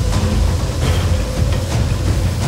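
Film soundtrack: a loud, steady low rumble under dramatic music, with a few sharp crackles.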